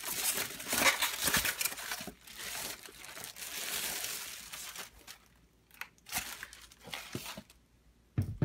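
Thin clear plastic bag crinkling and rustling as it is pulled off a boxed music-box figurine. The crackling is dense at first and thins to a few scattered clicks over the last few seconds.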